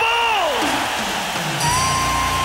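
An arena PA announcer's drawn-out shout, falling in pitch, over a cheering crowd. Near the end, music comes in with a low held note and a steady high tone.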